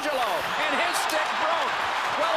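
A hockey stick snapping on a slap shot, a sharp crack about a second in, over arena crowd noise and voices.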